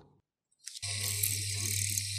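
Small bench drill press's electric motor running steadily, a low hum with a high even hiss, starting abruptly about a second in.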